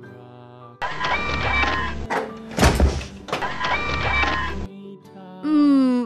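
Cartoon excavator sound effect: a mechanical whirring and clattering with a short burst in the middle as the digger moves wood, over light background music. A short falling tone follows near the end.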